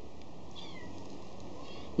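Faint animal calls, three short ones each falling in pitch, over a steady low background hiss.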